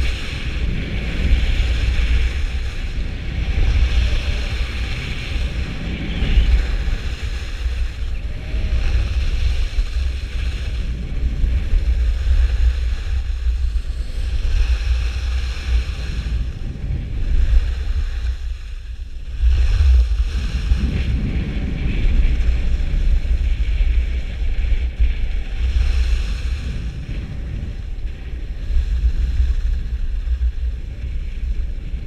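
Wind buffeting the microphone of a skier's camera, mixed with the hiss and scrape of skis carving on groomed snow. The rush drops away for a moment about two-thirds of the way through, then comes back.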